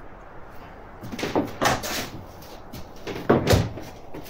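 Irregular knocks and bangs, like a door or cupboard being knocked or shifted, starting about a second in, with a heavier bang past three seconds. These are the unexplained noises that the frightened guard takes for something paranormal.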